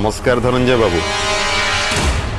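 A man's voice for about the first second, over background music. The music has a sharp hit at the very start and then a sustained chord.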